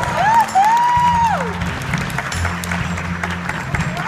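A congregation clapping, with a few whooping cheers in the first second and a half, over a live band playing steady low notes.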